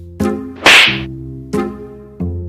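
A single sharp whip-like hit sound effect, the loudest thing here, about two-thirds of a second in, marking the knock-down in a slapstick scene. It plays over background music whose notes start twice.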